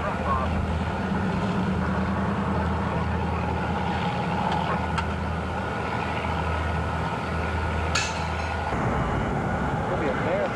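A motor vehicle's engine running steadily with a low drone, which stops about nine seconds in.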